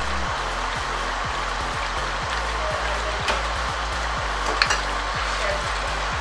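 Chicken, tomatoes and spices sizzling steadily in hot oil in a pot as yogurt goes in and a wooden spoon stirs it, with a couple of light knocks partway through. Background music plays underneath.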